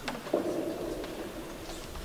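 A knock as a handheld microphone is set down into its table stand, followed by a low hum-like sound lasting about a second.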